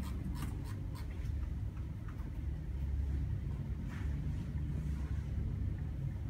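A steady low rumble with a few faint clicks over it: several in the first second or so, and one about four seconds in.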